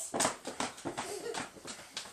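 Quick, uneven taps and thumps, about five a second, from people dancing.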